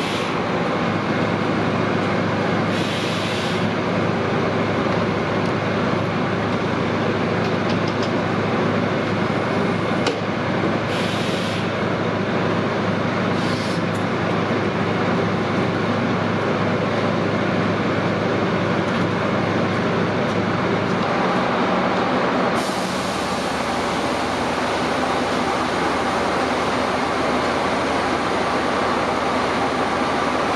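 Large coach bus idling close by: a steady engine hum and noise. Short bursts of air hiss come about 3, 11 and 13 seconds in. Over the last third the sound turns more hissy and the low hum changes.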